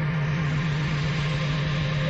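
A steady low hum with a fainter higher tone and an even hiss over it, unchanging throughout.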